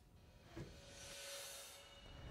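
Faint whoosh sound effect of a TV news transition graphic: a soft rush of high hiss that swells from about half a second in and fades away near the end.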